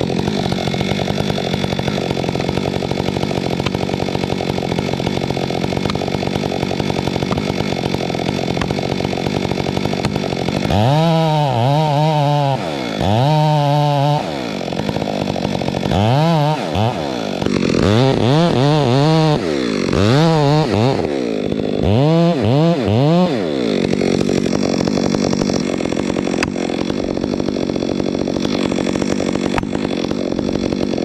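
Gas chainsaw cutting into the trunk of a large dead fir tree during the felling cut. It runs steadily at first. From about a third of the way in until near the end, the engine speed rises and falls repeatedly, about eight times, then it settles to a steady run again.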